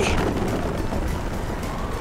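Steady rushing, rumbling noise of soapbox cars rolling fast down the track, a racing sound effect under background music.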